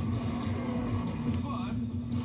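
Sound of a VHS tape played through a TV, picked up in the room: a steady low hum with a brief faint voice-like sound about a second and a half in, between louder trailer narration.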